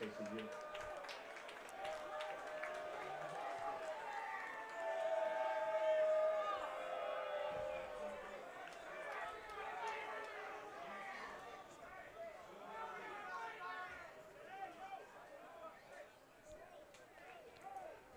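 Faint, distant voices carrying across a stadium field, loudest about five to seven seconds in and dying away near the end.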